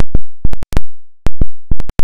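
Saramonic Blink500 B2 wireless microphone system recording interference instead of sound: a loud, irregular pulsing of about a dozen sharp digital pops with dead silence between them. This is the audio dropout the speaker gets on the transmitter's middle gain settings.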